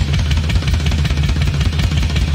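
Live hard-rock band recording with the drum kit to the fore: dense bass drum and snare hits under a heavy bass, played continuously.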